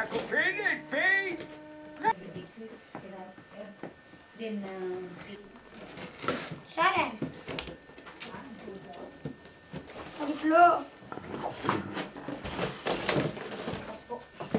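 Young children's voices in short spells of indistinct chatter, with scattered knocks and rustles of handling in the last few seconds.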